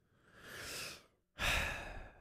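A man breathing heavily into a close-up microphone. There is a soft breath, then a louder sigh about a second and a half in.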